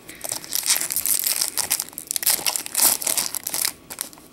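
Foil wrapper of a Pokémon trading card booster pack being torn open by hand, a run of irregular crinkling and ripping with a short lull near the end.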